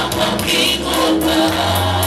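Live gospel worship music: singing over a band with a sustained bass line.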